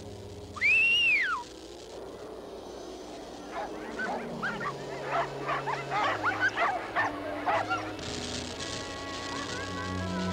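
Pack of sled huskies whining and yipping: one loud high whine that rises and falls about a second in, then a run of quick excited yips and barks through the middle, over background music.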